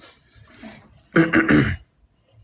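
A person clears their throat once, loudly, a little after a second in.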